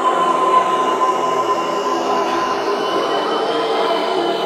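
Electronic dance music in a beatless stretch: sustained synth drones held at several steady pitches over a hissing noise wash, with no bass or drums.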